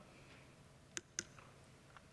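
Near silence in a speaking pause, broken by two short, sharp clicks about a second in, a fifth of a second apart.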